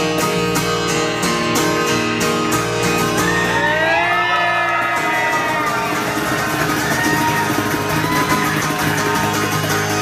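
Acoustic guitars and a cajon playing the end of a song: the strummed rhythm stops about three seconds in and the final chord rings on. Voices whoop over the ringing chord.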